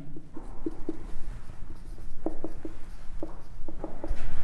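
Marker pen writing on a whiteboard: a string of short, separate strokes and taps as words are written.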